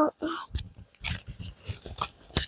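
A child's short strained vocal sounds as he pulls a plastic bike helmet down over his head, followed by a series of brief rustles and knocks from the helmet shell and straps being handled.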